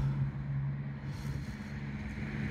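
Steady low mechanical hum.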